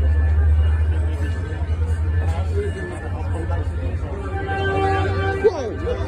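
Caltrain passenger train passing with a heavy low rumble; about four seconds in its horn sounds a steady chord, which is loud.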